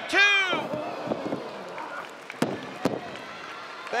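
Referee's hand slaps the ring mat on a two-count, then arena crowd noise. About halfway through, two sharp thuds on the ring land about half a second apart.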